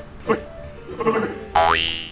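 A loud comic 'boing' sound effect added in editing: a quick upward-sliding twang lasting under half a second, about a second and a half in.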